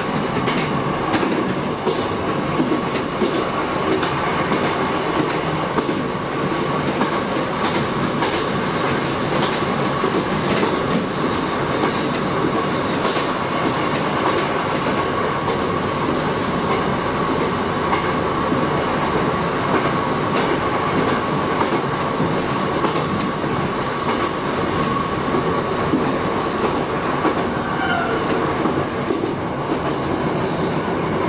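Shin-Keisei 8000 series electric train running on jointed track, heard from the cab: steady running noise with irregular clicks of the wheels over rail joints and a steady high whine. A brief squeal near the end as it runs into a station.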